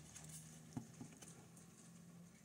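Near silence: a faint steady low hum, with two light taps about a second in as plastic miniatures are handled.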